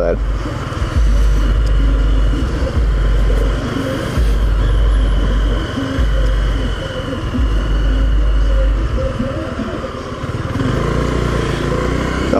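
Motorcycle engine running at low speed in city traffic, with a heavy rumble of wind on the microphone that drops out briefly now and then.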